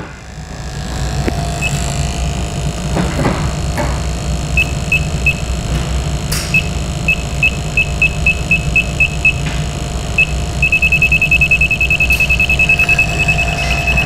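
Electronic CO2 leak detector (ATS BULLSEYE) beeping as its probe samples at an A/C hose fitting. Single high beeps come a second or so apart, then speed up near the end into a fast, even beeping, the detector signalling CO2 leaking from the suction hose. A steady low hum runs underneath.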